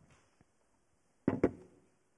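Two quick knocks in close succession, a little over a second in, sharp and loud against a quiet room.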